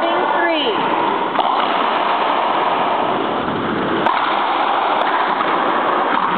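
Racquetball rally in an echoing court: two sharp cracks of the ball being struck, about a second apart near the end, over a steady loud hiss of room noise, with a brief voice call at the start.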